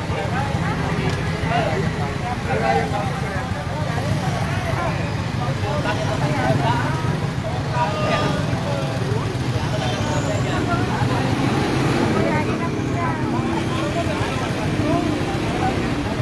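Motorcade traffic: a steady drone of vehicle engines and road noise with many overlapping, indistinct voices over it.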